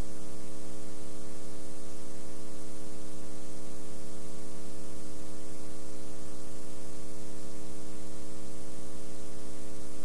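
Steady electrical mains hum with a stack of overtones over a bed of hiss, the audio noise of a blank, unrecorded stretch of VHS tape being played back. It holds unchanged throughout.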